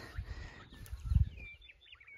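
Outdoor ambience: a few faint, brief bird chirps over low rumbling noise on the microphone, which is loudest a little past the middle.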